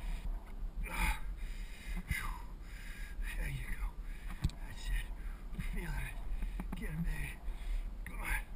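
A man's short breaths and wordless vocal sounds, coming in brief bursts every second or so, over a steady low rumble of wind and riding noise on a bicycle-mounted camera.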